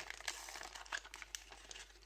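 Crinkling of a Panini FIFA 365 sticker packet wrapper as hands peel it open: a quiet, irregular run of small crackles.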